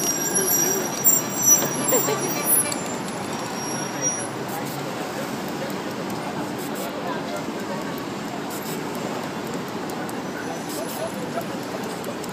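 Busy street ambience: steady traffic noise with indistinct voices in the background, and a few short louder sounds in the first three seconds.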